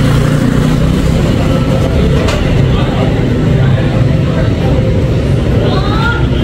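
Motorbike traffic passing close by on the street: a steady, loud engine rumble. A sharp click sounds about two seconds in.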